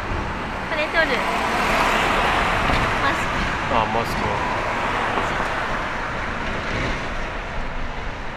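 Road traffic on a city street: a steady rush of passing vehicles that swells over the first few seconds and then eases off.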